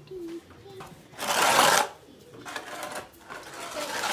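Long-handled twig broom scraping wet cow dung across a concrete cattle-shed floor. There are a few noisy strokes, the strongest just over a second in and weaker ones later.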